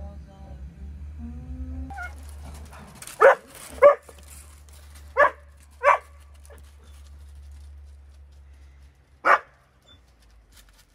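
A dog barking: two sharp barks a little over half a second apart, another pair about a second later, then a single bark near the end.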